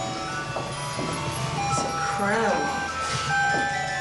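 Chiming music with held notes, like a Christmas tune, plays throughout, and a voice briefly exclaims a little past the middle.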